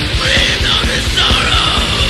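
Raw black metal: harsh shrieked vocals over fast, dense drumming and distorted guitars.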